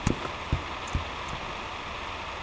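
Three short, dull thumps about half a second apart, the last a little fainter, over a steady background hiss.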